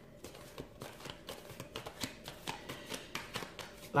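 A tarot deck being shuffled by hand: a rapid run of soft, irregular card clicks.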